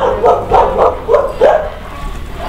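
A man sobbing in distress: a run of about six short, choked vocal cries, three or four a second.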